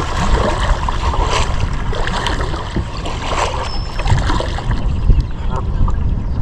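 A Canada goose taking off from the river just ahead of a kayak's bow, its wings slapping the water in a burst of splashing at the start, over a steady low wind rumble on the microphone.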